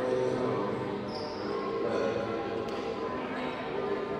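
Gym ambience in a large hall: many overlapping voices of players and spectators, with a ball bouncing on the hardwood court.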